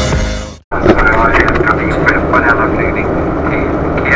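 Background music fades out, then a steady airliner cabin drone begins about a second in, with a voice talking over it.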